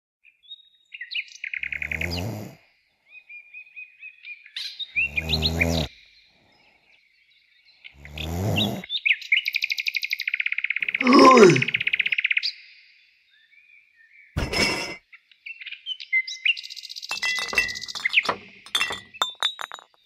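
Birds chirping and trilling, with a man's low voice sounding three times and a loud shout of "Oi!" about halfway through. Near the end come a sharp knock and a run of clinks and clicks.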